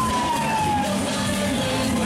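Loud, continuous music from a children's fairground car ride, with a single falling tone gliding down over about the first second.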